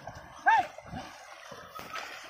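A man shouting a loud, drawn-out "hey!" to urge on a pair of bullocks pulling a cart, one call about half a second in, with fainter calls around it.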